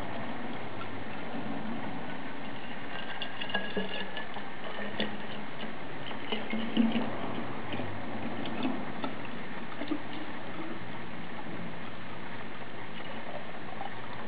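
Anise liqueur poured in a thin, steady stream from a plastic jug into a glass bottle of sloes and coffee beans: a continuous trickle and splash with scattered small clicks, as the bottle fills.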